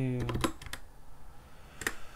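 Keystrokes on a computer keyboard: a quick run of taps about half a second in and a couple more just before the end, with a spoken word at the very start.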